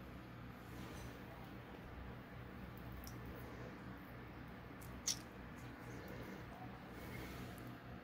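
Quiet room tone with a low steady hum, broken by faint handling sounds as a lemon wedge is squeezed over a bowl of soup: a small tick about three seconds in and a short, sharper click about five seconds in.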